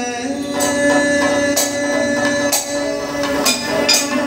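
Kathakali vocal music: a singer holds one long steady note, accompanied by a few sharp metallic strikes of the singers' hand cymbals and gong at uneven intervals.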